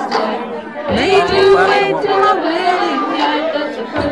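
A woman singing karaoke over the chatter of a bar crowd, holding one long note from about a second in.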